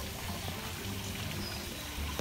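Steady splashing of water pouring from a pipe into a pond.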